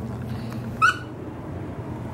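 A squeaky dog toy squeaks once, short and high, about a second in, over a steady low hum.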